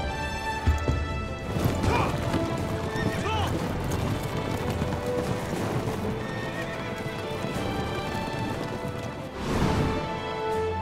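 A ridden horse's hoofbeats, then a horse whinnying about two to three seconds in, over a film score of sustained notes.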